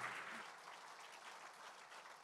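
Audience applauding, faint and dying away.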